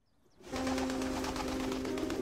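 Near silence, then about half a second in a sudden flurry of pigeons flapping their wings, with a steady low note held underneath.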